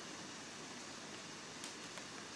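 Faint steady hiss of microphone room tone, with one faint click about one and a half seconds in.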